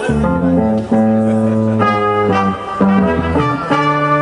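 Live band playing an instrumental jazzy passage: a sousaphone bass line of held low notes under keyboard and brass.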